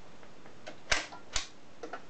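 Sharp mechanical clicks from a portable record player's controls and tonearm being worked by hand: two loud clicks about half a second apart, with fainter clicks just before and near the end.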